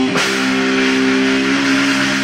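Live rock band: a drum and cymbal hit just after the start, then an electric guitar chord held and ringing over cymbal wash, likely the closing chord of the song.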